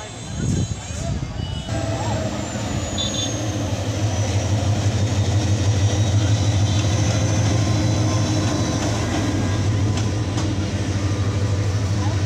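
Diesel locomotive of a passenger train passing close by, its engine running with a steady low drone as the coaches roll past. The sound grows louder about two seconds in and then holds steady.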